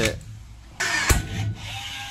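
A cordless power tool runs in a short burst of just under a second on the aluminium frame upright, with a sharp crack near its start, as the upright is drilled and riveted.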